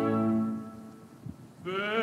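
An orchestral chord dies away within the first second, leaving a short, nearly quiet gap with one faint knock. Near the end a high operatic voice enters, singing with a wide vibrato.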